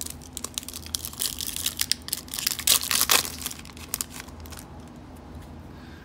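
Foil wrapper of an O-Pee-Chee Platinum hockey card pack being torn open and crinkled by hand: a rapid crackling that is loudest about three seconds in, then dies down.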